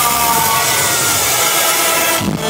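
A drumless passage of a live electronic rock song: a loud, hissing wash of noise with a few tones sliding down in pitch.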